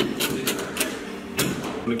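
Metal tool working at a steel handcuff to break it off a pipe: about half a dozen sharp, irregular metal clicks and scrapes.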